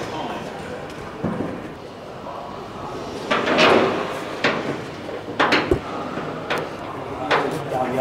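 About half a dozen sharp metallic knocks and clunks, bunched in the second half, as the Lancaster's riveted aluminium tailplane structure is shifted against the rear fuselage frame during fitting.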